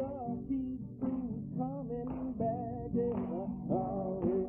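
Music: a voice singing a wavering melody over a steady, low instrumental accompaniment.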